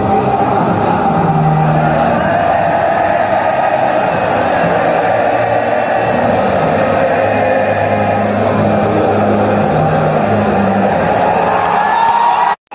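A huge football stadium crowd singing a national anthem in unison over low held notes from the PA. The tens of thousands of voices blend into a loud, steady roar.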